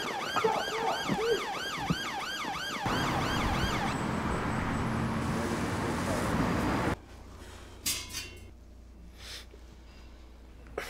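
Police siren yelping in fast rising-and-falling sweeps, about four a second, for the first few seconds, then a loud noisy rush. It cuts off suddenly about seven seconds in, leaving faint room sound with a couple of soft knocks.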